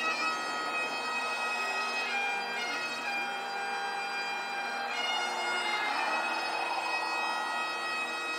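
Bagpipes playing a slow melody over steady drones, with quick grace-note flourishes at the note changes.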